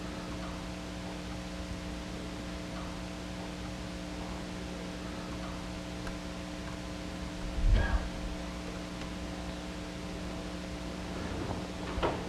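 Steady electrical hum with a hiss underneath, a few constant low tones, from the microphone and sound system with nobody speaking. A brief low thump comes just before eight seconds in.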